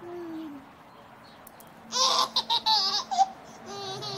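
A one-year-old child laughing. A short falling vocal sound comes first; about two seconds in, a loud burst of choppy, high-pitched giggles lasts just over a second; another short vocal sound begins near the end.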